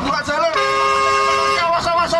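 Fire engine horn sounding one steady blast of about a second, two tones held together, between a man's loud shouts.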